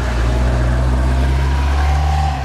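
A steady, low engine rumble, as of a motor idling close by, loud and unchanging.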